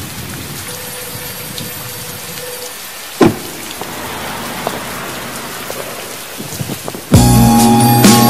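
Rain falling steadily, with one sharp crack of thunder about three seconds in; about a second before the end, loud slow R&B music cuts in abruptly.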